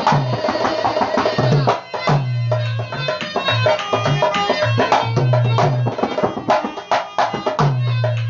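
Dholak played in a brisk folk rhythm, sharp treble-head slaps over low, held bass strokes that bend in pitch, with a harmonium sustaining chords underneath.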